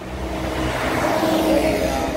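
A motor vehicle's engine going by close, growing louder to its loudest about a second and a half in, then starting to ease off.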